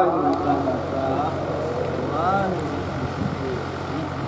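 Scattered voices of a congregation over a steady low electrical hum from the public-address system.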